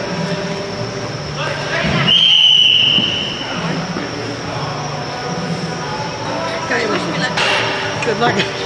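A referee's whistle gives one steady, loud, high-pitched blast of about a second, about two seconds in, stopping play, over a background of voices.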